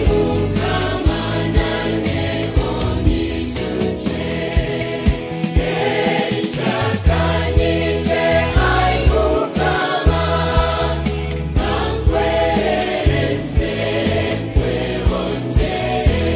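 Gospel choir singing a Runyankore-Rukiga worship song over a band with a bass line and a steady beat.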